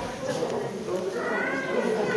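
Indistinct high-pitched voices of onlookers, with a drawn-out, rising high voice in the second half.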